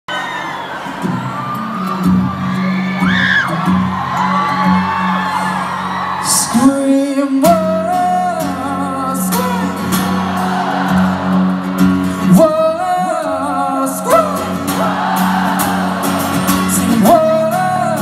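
Live pop music in an arena: a male voice singing long held notes over a sustained low band tone, with the crowd whooping.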